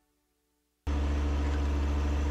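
Compact John Deere tractor's diesel engine running steadily. It cuts in suddenly almost a second in, after near silence.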